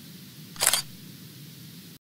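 Logo sting sound effect: a single short, sharp swish about half a second in, over a faint steady low hum.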